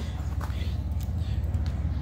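Steady low background rumble with a few faint clicks and taps.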